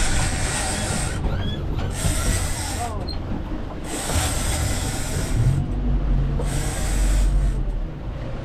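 Fishing reel buzzing in four bursts of about a second each, with short gaps between, as a hooked fish is fought on rod and line.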